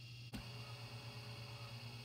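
3D printer beginning to home: a single sharp click about a third of a second in, then faint stepper-motor whine over a steady low hum.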